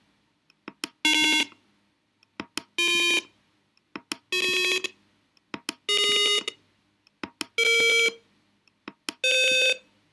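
Simulated piezo buzzer of a Tinkercad Arduino piano playing six separate electronic notes, each about half a second long and each higher than the last, as the push buttons are clicked in turn. A short click comes just before each note.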